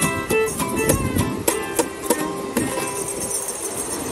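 A small acoustic band, an acoustic guitar strummed with a fiddle and a shaker, plays the last bars of a song; the strumming stops about two and a half seconds in and the final chord fades into steady surf and wind noise.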